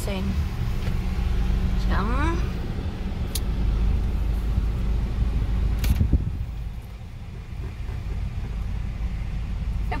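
Low, steady rumble of a Honda car's engine and running gear heard from inside the cabin as it creeps forward, easing off about seven seconds in as the car stops. A short rising sound comes about two seconds in, and a sharp click near six seconds.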